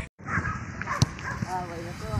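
A football kicked once on a grass pitch, a single sharp knock about a second in, followed near the end by a short high-pitched call, with children's voices around it.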